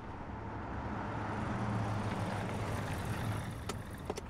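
A motor vehicle driving by, its low engine hum and road noise swelling to a peak about halfway through and then easing off.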